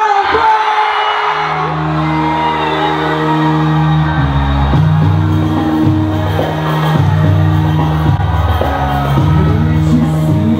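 Live concert music in a large hall: the crowd cheers and whoops, then about a second in a song starts with sustained low chords that change every second or so, with shouting and singing voices over them.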